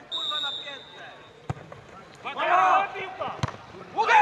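A referee's whistle blown once, one steady high note about a second long, followed by players' shouts and sharp thuds of a football being kicked, the loudest one near the end.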